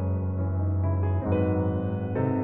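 Background piano music, soft and slow, with a new chord about every second.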